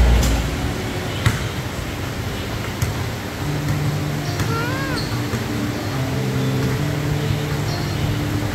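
Background music with a stepping bass line playing in a gym, over a few knocks of basketballs bouncing on the floor and one child's call about halfway through.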